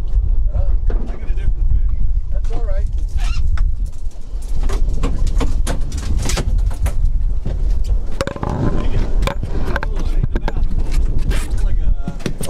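Steady wind rumble on the microphone with many sharp knocks and clatter from inside a small open fishing boat, and indistinct voices now and then, mostly near the start.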